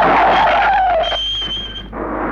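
Car on a film soundtrack pulling away with a tyre squeal whose pitch slides down, then a short steady high tone in the second half.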